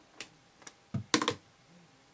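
A handful of short, sharp clicks and knocks, faint at first, with the loudest pair about a second in.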